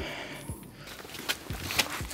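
Footsteps and a few light knocks and bumps as someone climbs into the open cargo area of a minivan.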